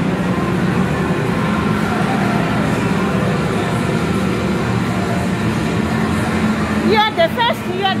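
Motorcycle racing arcade game's engine sound effects playing through the cabinet speakers, a steady, unbroken drone; a voice cuts in near the end.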